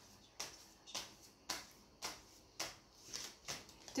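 A tarot deck being shuffled by hand: short, soft card-slapping strokes about twice a second.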